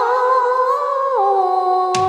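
A woman humming a slow melody into a microphone, holding long notes with vibrato and stepping down in pitch a little past halfway.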